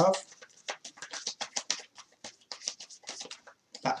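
A deck of tarot cards being shuffled by hand: a rapid, irregular run of light papery clicks as the cards slap against each other.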